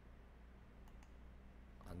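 Near silence: a low steady hum with a single faint computer-keyboard click a little under a second in.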